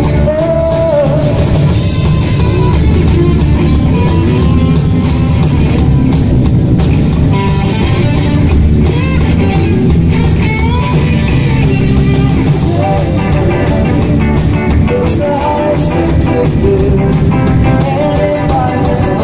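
A rock band playing live: electric guitar, bass guitar and drum kit, with a man singing lead at a microphone. The band plays loudly and steadily, without a break.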